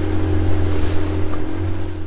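Engine of a small open motor launch running steadily under way, a constant low drone with a steady higher hum, over the rush of water and wind.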